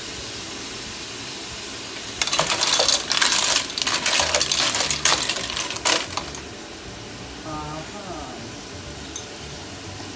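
Clam shells clattering against each other and the pot as they are stirred with a wooden spatula, a dense run of clicks and rattles from about two seconds in to about six seconds, over a low sizzle from the pot.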